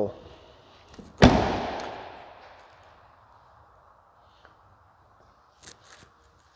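The front door of a 2021 Ford F-250 crew-cab pickup slammed shut once, about a second in, with a long echo fading over the next two seconds.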